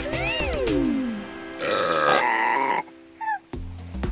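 Cartoon voices singing a falling 'mmm-mm' over children's music, then a long cartoon burp sound effect about halfway through. A short falling blip follows near the end.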